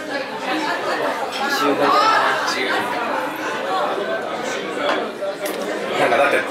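Chatter of several people talking at once, the murmur of a busy restaurant dining room.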